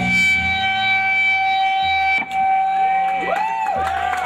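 Live noise-rock band: an electric guitar through effects holds a steady feedback tone. Low bass notes sound in the first half, a single hit lands about halfway, and swooping, siren-like pitch glides come in near the end.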